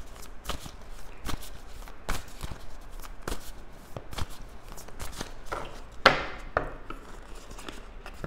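Tarot cards handled on a wooden table: irregular taps and flicks of the cards as the deck is worked, with a sharper slap and brushing sound about six seconds in.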